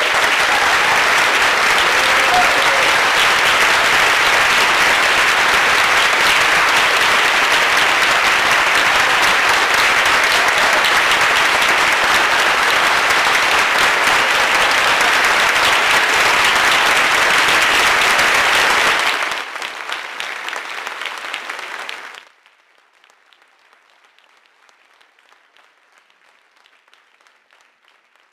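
A large audience applauding, loud and sustained for about nineteen seconds, then thinning out and stopping about three seconds later.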